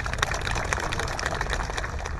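Applause: a crowd's hands clapping in a dense patter, with one pair of hands clapping close to the microphones.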